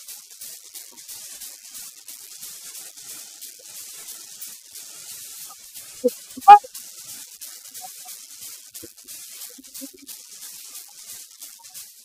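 Tennis ball struck by a cricket bat about six and a half seconds in: a single sharp knock, the loudest sound, with a softer knock half a second before it. A steady faint hiss runs underneath.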